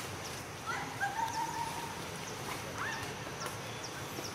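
Monkey calls: a few short pitched cries just before a second in, one held for about a second, then a single arching cry near three seconds, with faint high chirps in the background.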